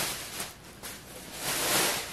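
Plastic shopping bag rustling and crinkling as it is handled, swelling twice, once at the start and again near the end.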